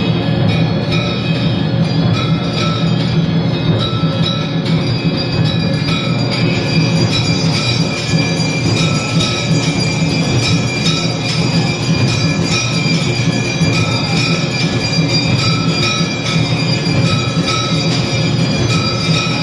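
Temple aarti clamour: many bells ringing together over rapid, continuous drum and cymbal beating, with high ringing tones sounding on and off.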